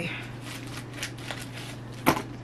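Soft rustling and scattered light clicks of a mail package and its wrapping being handled and opened by hand, over a low steady hum.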